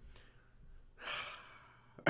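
A man's soft breathy exhale through a smile, a stifled laugh, strongest about a second in, with fainter breaths around it.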